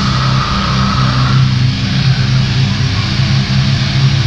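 Heavily distorted electric guitar and bass from a live grindcore band holding a sustained, droning chord through the amplifiers. A high steady tone rides over it and stops about a second and a half in.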